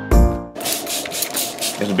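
Butcher paper crinkling and rustling as it is folded over a pile of short ribs, starting about half a second in, over background music that opens with a chord hit.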